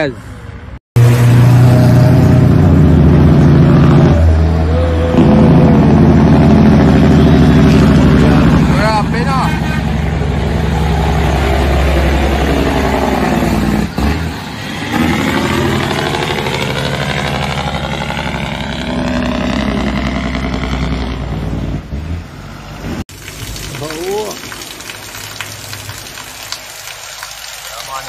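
Caterpillar C15 (6NZ) diesel in a heavy truck running loud under power as the truck drives past, its pitch fanning out as it passes about halfway through. The sound breaks off abruptly twice, at cuts about a second in and near the end, where it turns quieter.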